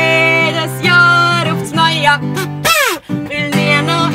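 A woman singing a song in Swiss German over an acoustic guitar, with a short break in the sound about three seconds in.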